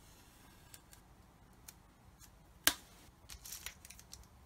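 Masking tape being peeled and handled with tweezers on a painted plastic model: a few faint light ticks, one sharp click a little after halfway, then a short crackly rustle near the end.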